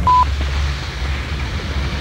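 A single short electronic beep, one steady high tone, right at the start. Then wind rumbles on the microphone, low and steady, with a faint hiss.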